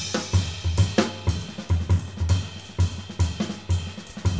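Sonor jazz drum kit played alone: an irregular run of low drum strokes, about three a second, under cymbal and hi-hat strokes.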